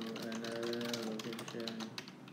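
Keyboard typing: a rapid run of key clicks as a sentence is typed, stopping near the end, over a voice holding drawn-out hummed tones.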